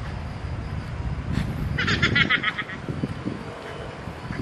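A bird gives a quick chattering call of about ten rapid high notes, about two seconds in, over a steady low outdoor rumble.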